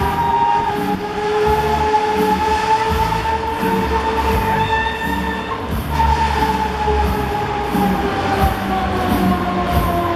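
Break Dancer fairground ride running at speed: a loud, steady mechanical whine that slowly sinks in pitch and jumps back up about six seconds in. Underneath it runs a regular beat of about two taps a second.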